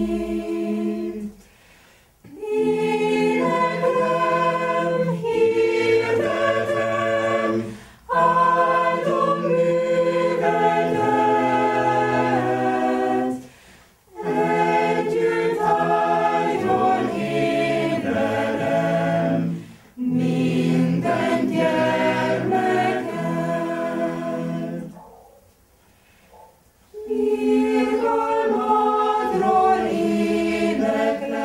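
A choir singing unaccompanied in several parts, line by line, with a short breath pause after each phrase of about six seconds.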